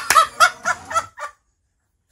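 A man's loud, high excited scream breaking into a quick run of about five laughing cries, stopping suddenly just over a second in.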